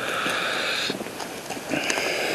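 Night insects calling in a buzzing chorus, strong for the first second, dropping back in the middle and swelling again near the end.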